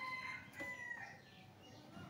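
Faint rooster crow: one long held call that ends about a second in.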